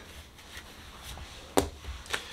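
A tarot card laid down on the table, making one sharp tap about one and a half seconds in.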